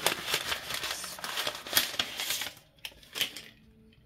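Paper and plastic crinkling and rustling as craft materials are handled on a desk. It is dense for the first two and a half seconds, then gives way to a few scattered clicks and taps.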